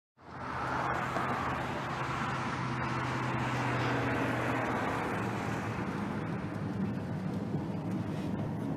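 A car driving slowly: a steady engine hum under even road and traffic noise.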